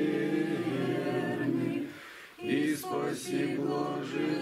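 A small group of mostly women's voices singing an Orthodox hymn unaccompanied, in long held notes, with a short break for breath about two seconds in before the singing resumes.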